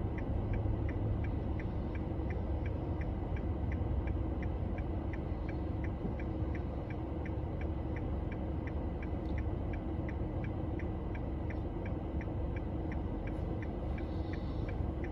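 Car turn-signal indicator clicking steadily, nearly three clicks a second, over the low rumble of the engine and road inside the cabin.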